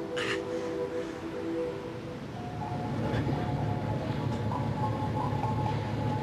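Sustained music chords fade out over the first two seconds, with a short burst of sound just after the start. Then a steady low vehicle rumble, a car running as heard from inside it, rises and holds, with a faint high tone above it.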